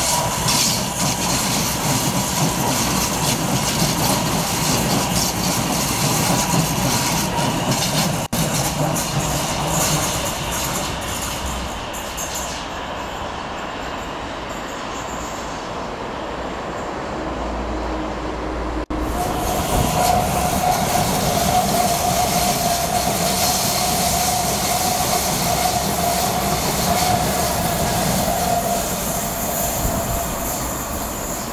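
A passenger train running past on the track, a steady rumble of wheels and cars with a thin, held squeal of the wheels on the rails. The sound breaks off for an instant twice, at about a third and two thirds of the way through.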